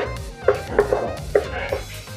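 A kitchen knife slicing through tomatoes and striking a cutting board: several short knocks about half a second apart. Background music plays under them.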